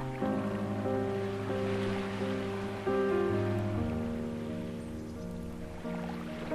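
Slow ambient piano music with sustained chords, a new chord coming in about a quarter second in and another near three seconds. Under it, a bed of ocean waves washing in, the hiss swelling around two seconds in and again near the end.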